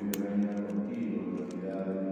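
A priest's voice over a microphone, intoning the words of the Mass in a steady, near-monotone chant, with one sharp click just after it begins.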